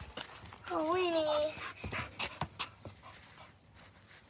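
A dog whines once, a wavering note lasting under a second about a second in, with panting and fabric rustling and brushing against the phone's microphone.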